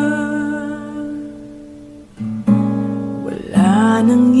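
Acoustic guitar and a solo singer in a slow Tagalog love-song cover. A held note and chord fade away over the first two seconds. A new guitar strum comes in about halfway, and near the end the voice returns with a note sliding upward.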